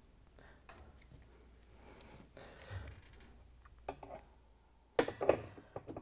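Faint handling noises as an impact driver's long extension and socket are lowered into a washing machine tub, with a sharp knock about five seconds in as the socket is set onto the hub nut. The impact driver itself is not running.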